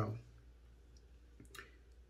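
A spoken word trails off at the start, then quiet room tone with two or three faint short clicks about a second and a half in.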